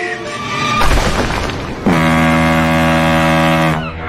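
Intro music and sound effects: a heavy boom-like crash about a second in, then a long steady low held tone that cuts in sharply and fades out just before the end.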